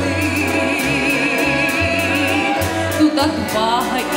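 Belarusian folk ensemble of men and women singing in harmony over a band accompaniment with a steady bass line. A high note is held with vibrato through the first half, then the phrase moves on.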